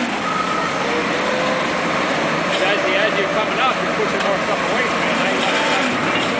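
Marion Model 21 electric shovel's electric drive and open gearing running in its machinery house, a loud steady mechanical noise that does not pause.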